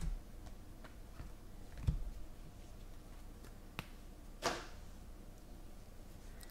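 Trading cards being handled and flipped through one by one: light scattered clicks and ticks of the glossy cards, a couple of soft thumps, and one louder swish of a card sliding about four and a half seconds in.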